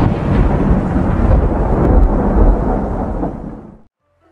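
Heavy downpour with a continuous low rumble of thunder, fading out near the end.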